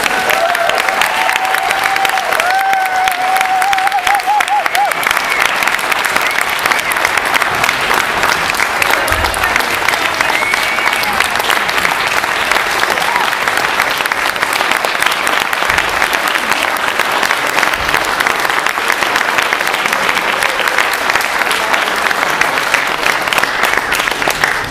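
An audience applauding steadily, with one long wavering call rising above the clapping in the first few seconds.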